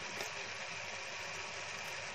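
Chopped spring onions and spices sizzling steadily in hot oil in a kadai.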